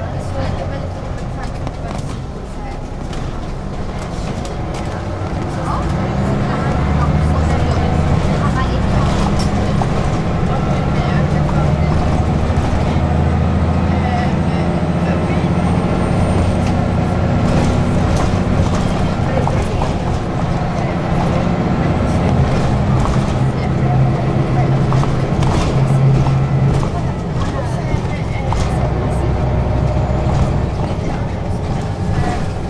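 City bus heard from inside the passenger cabin: engine and drivetrain hum over road noise, growing louder about six seconds in.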